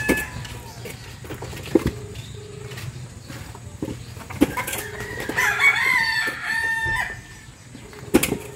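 A rooster crows once, a long call with a falling end, starting about five seconds in. Before it come a few dull knocks of concrete hollow blocks being set down on a stack.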